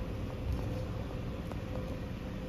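Steady low background hum with a thin steady tone in it, and a couple of faint light clicks.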